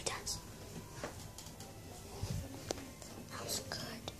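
Soft whispering and breath close to a phone's microphone, with faint rustles and small clicks of the phone being handled and a short low thump a little past halfway.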